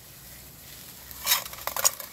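Grass and bramble leaves rustling as a small-mammal trap is pushed into thick vegetation by hand. A short burst of rustling comes a little over a second in, followed by a few sharp clicks.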